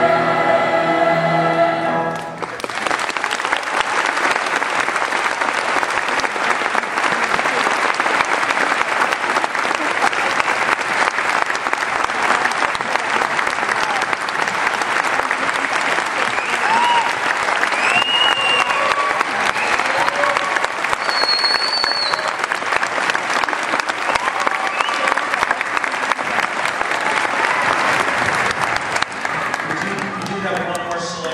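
A large youth choir finishes on a held chord that stops about two seconds in, followed by sustained audience applause with scattered cheers and whistles.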